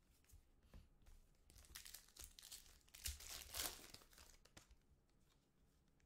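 2019-20 Panini Contenders basketball cards being flipped through by hand, faint rustling and flicking as the cards slide over one another, loudest about three seconds in.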